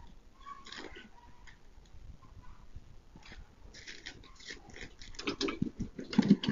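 A dog making short, faint sounds, which grow busier and louder in the last second or two.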